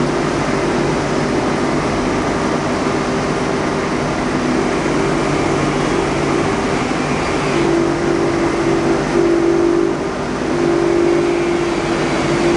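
Electric motor of a workshop wire-brush wheel running with a steady hum and whir. The hum drops slightly in pitch about seven and a half seconds in and breaks up several times after that.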